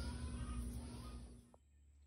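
Faint background noise and a low steady hum that cut off abruptly about a second and a half in, at a cut in the recording, leaving only a very quiet outdoor background.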